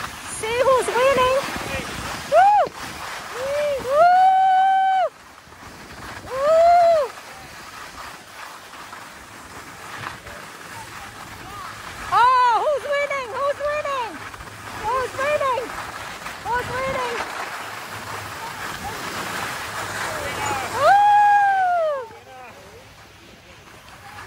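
Young voices calling out in long rising-and-falling shouts, several times, over a steady hiss of skis and a snowboard sliding on packed snow.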